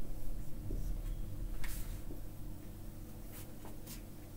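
Felt-tip marker writing on a whiteboard: a few short stroke sounds, one about one and a half seconds in and two close together near the end, as words are written and a long line is drawn across the board.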